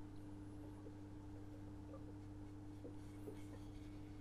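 Faint room tone with a steady low hum, and a few soft, light taps as a paint pen is dabbed along the rail of a length of model railway track.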